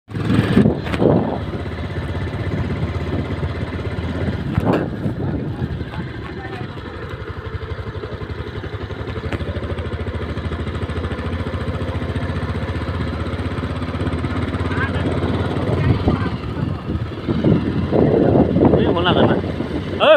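Motorcycle engine running steadily under way, with road and wind noise. A person's voice calls out near the end.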